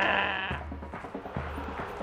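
A cartoon character's quavering, bleat-like vocal noise that breaks off about half a second in, followed by background music with a low, pulsing bass.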